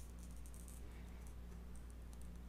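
Faint gritty ticking of a hand glass cutter's wheel scoring a curved line across a piece of stained glass, over a steady low electrical hum.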